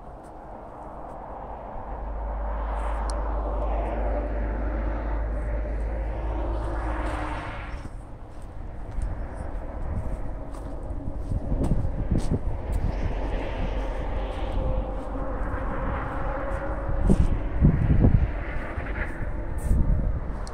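Outdoor rushing noise, typical of a vehicle passing, that swells and fades twice, with uneven low gusts of wind buffeting the microphone in the second half.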